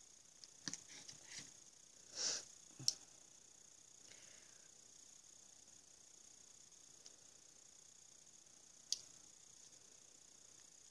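Faint handling sounds of small objects on a table: a few light taps and clicks in the first three seconds, a short breathy rustle, and one sharp click about nine seconds in as a small plastic jar of metallic powder is handled for opening.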